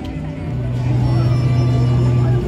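Live pop music through a small portable amplifier: a keyboard accompaniment holding a long, steady low bass note, with a woman singing into a handheld microphone over it.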